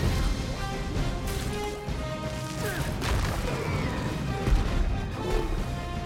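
Action film score mixed with crashing impact effects over a steady low rumble, with one loud hit about four and a half seconds in.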